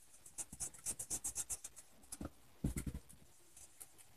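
Felt-tip pen scribbling on paper, colouring in with a run of quick short strokes, several a second, with a low knock about three seconds in.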